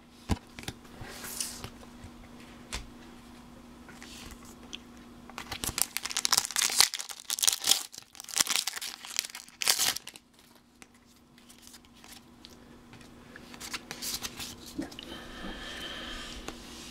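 Foil Pokémon TCG booster pack wrapper being torn open and crinkled, in several loud bursts of tearing and crackling between about six and ten seconds in. Softer rustling of the cards being handled follows near the end.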